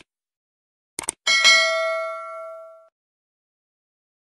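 Sound effect of a subscribe-button animation: two quick clicks about a second in, then a bright bell ding that rings out and fades over about a second and a half.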